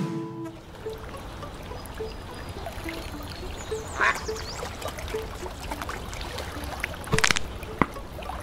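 Lakeside ambience with ducks quacking: one call about four seconds in and two close together near seven seconds, over a low steady rumble with faint high chirps.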